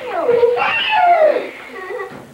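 Children's voices giving wordless squeals and cries with sliding pitch during a running game. They are loudest in the first second and a half, then fade.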